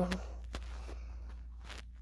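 A child's whispered word ending, then a quiet stretch over a low steady hum, with a few faint soft taps or knocks.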